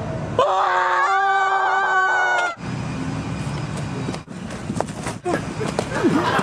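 A person screaming: one long, high, held scream starts about half a second in and breaks off after about two seconds. It is followed by a stretch of noise with scattered knocks.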